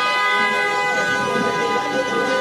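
A vehicle horn held in one long, steady blast.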